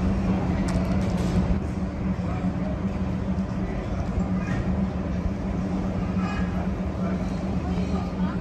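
Outdoor restaurant ambience: indistinct chatter of diners and staff over a steady low hum.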